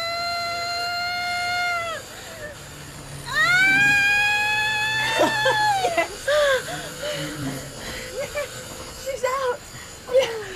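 A woman in labour screaming as she gives a final push: two long, held, high screams, the second starting about three seconds in, then shorter whimpering cries and gasps.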